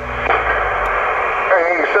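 Cobra 148 GTL CB radio speaker receiving long-distance skip: a narrow band of static hiss with faint, garbled voices buried in it, and a clearer voice breaking through near the end.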